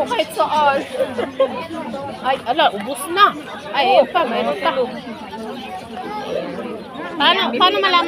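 People talking: several voices in ongoing conversational chatter.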